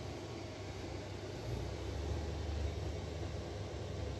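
Steady low room hum with a faint even hiss, swelling slightly in the middle, with no distinct events.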